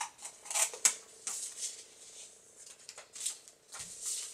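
Scissors cutting through folded construction paper, two layers at once: a handful of short, crisp snips at irregular intervals.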